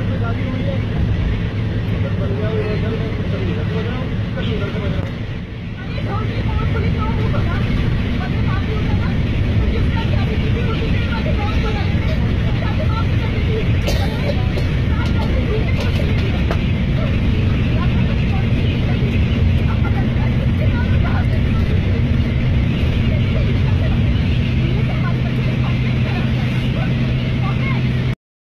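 A coach's engine running steadily under way, heard from inside the cab as a loud, even drone with a constant low hum, with voices talking in the background.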